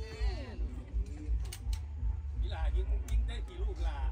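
Voices talking over a steady low rumble, with a few sharp clicks in between, a cluster of three about a second and a half in and more in the last second.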